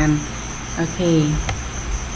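A steady high-pitched drone, like an insect chorus, runs under a person's voice, which speaks briefly twice. A single sharp click comes about one and a half seconds in.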